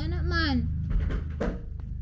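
A voice for the first half-second, then two short, soft knocks about a second in, over a steady low hum.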